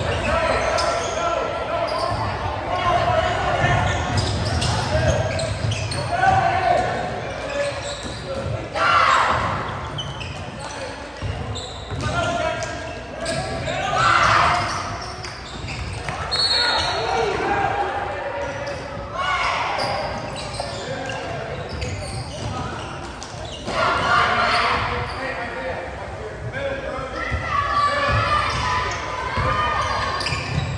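A basketball dribbled and bounced on a hardwood gym floor during play, with repeated thuds all through, over the chatter of a crowd of spectators in a large, echoing gym.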